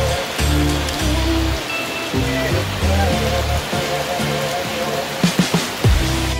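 Heavy rain pouring onto a swimming pool and the deck around it, a steady hiss, heard under background music with a beat.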